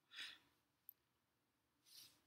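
Near silence with a soft breath near the start and another just before speech resumes, and one faint click about a second in.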